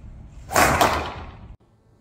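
Golf driver swung and striking the ball: a quick rush of air and a sharp crack about half a second in, then a second sharp knock a fifth of a second later, with ringing that fades before it cuts off abruptly.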